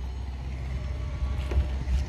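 Steady low rumble, with a few faint clicks in the second half.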